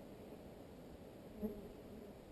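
Flies buzzing faintly around the microphone, with one fly passing close in a short, louder buzz about one and a half seconds in.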